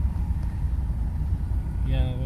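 Renault Mégane Scénic engine idling, a steady low rumble, with a light click right at the start and another about half a second in.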